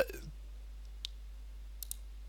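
Computer mouse button clicks: a single click about a second in, then a quick pair near the end, over a steady low hum.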